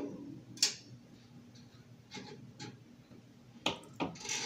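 A few small, sharp metallic clicks as a wire's push-on connector is worked loose and pulled off a heating-element terminal on the sheet-metal back of an electric oven. The loudest click comes near the end.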